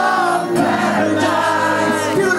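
Live hard rock band: a male lead singer singing into a microphone over electric guitar and drums, loud and continuous.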